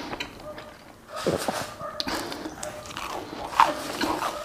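Close-miked chewing and wet mouth sounds of a man eating with his mouth full, with a short falling 'mm'-like hum about a second in and a sharp wet smack near the end.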